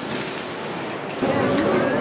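Rain falling, an even soft hiss, cut off about a second in by the busier sound of voices and pitched sound in a crowded open square.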